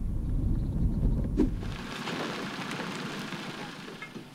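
Steady low rumble of road and engine noise inside a Peugeot car's cabin at motorway speed. A little under two seconds in, it gives way to a thinner, even hiss.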